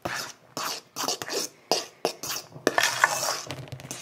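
A utensil scraping and stirring around a stainless steel mixing bowl while folding a soft whipped-topping and cream cheese mixture: a run of irregular scrapes and soft knocks against the metal.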